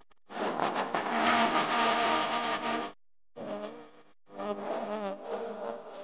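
Banda sinaloense brass and cymbals starting up: a loud held band chord of about two and a half seconds, a short break, then the brass comes back in with a wavering melody line.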